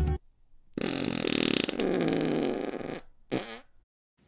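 Comic fart sound effect: one long, drawn-out fart, then a short second one about three seconds in.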